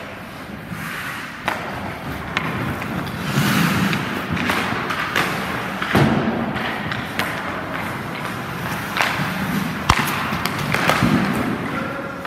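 Ice hockey practice: skate blades scraping and carving on the ice, with a string of sharp knocks and cracks from sticks striking pucks and pucks hitting the goalie and net. The sharpest crack comes about ten seconds in.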